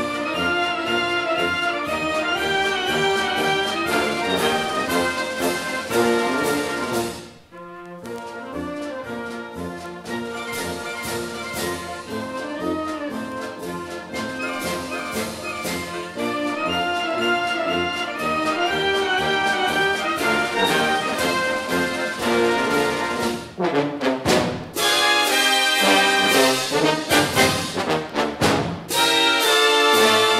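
Orchestral classical music with brass prominent. The sound drops away briefly about seven seconds in, and from about three-quarters of the way through the music becomes more clipped and accented.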